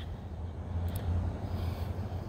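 Low, steady outdoor background rumble with a faint hiss.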